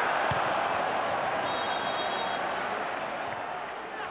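Football stadium crowd noise, a steady wash of many voices that eases slightly toward the end, as the home side win a corner.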